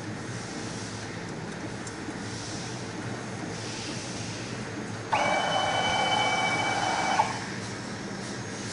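Mini UV flatbed phone-case printer running with a steady mechanical hum and soft recurring swells of hiss as its print and UV-lamp carriage works over the case. A little past halfway a louder steady whine starts abruptly and cuts off about two seconds later.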